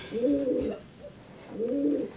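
A pigeon cooing: two low, rolling coos, one just after the start and one near the end.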